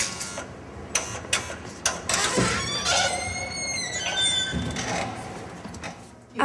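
Barred metal door clanking and rattling several times, then a drawn-out metallic squeal lasting about a second, typical of a metal door or its hinge being worked.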